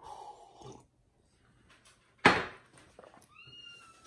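A sip of coffee drawn from a ceramic mug, then a sudden loud exhale about halfway through. Near the end a high, drawn-out whine rises and then holds for over a second.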